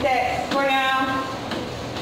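A person's voice with long, drawn-out pitched stretches, speaking or singing in words not transcribed.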